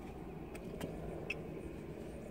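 Steady low vehicle rumble with a few faint clicks.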